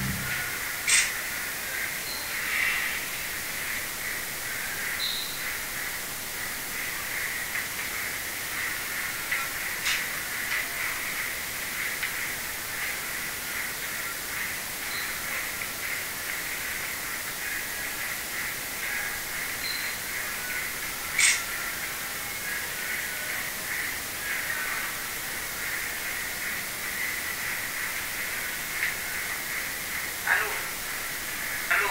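A steady high hiss with a light crackle, broken by a few sharp clicks about a second in, about ten seconds in and about twenty-one seconds in.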